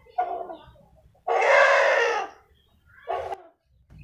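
Bangkok game rooster calling: a short call, then a loud, rough crow of about a second, then another short call.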